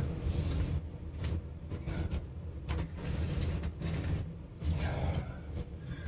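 Handling noise on a workbench: scattered light clicks and knocks as wooden dowel rods are put down and picked up, over a steady low hum.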